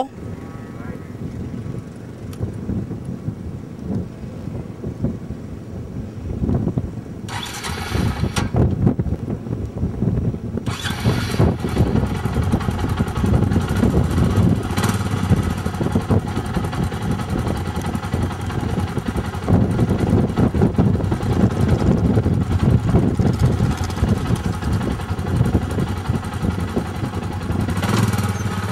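Four-wheel ATV engine being started and then running. It is fairly low at first, and about ten seconds in it gets louder and keeps going with an uneven, pulsing sound.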